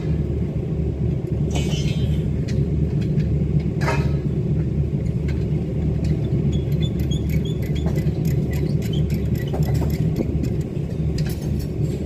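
Steady low rumble of machinery running on a construction site, with a few sharp knocks, one at the start and one about four seconds in.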